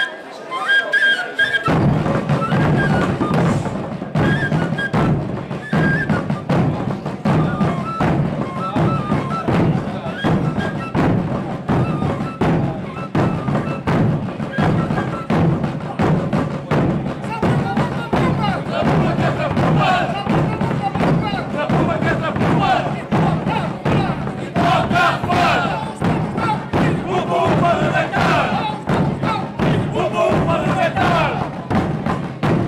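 A wooden fife plays a short tune, and about two seconds in a group of large rope-tensioned bass drums and a smaller drum join in, beating a loud, dense, steady rhythm. The fife carries on faintly over the drums.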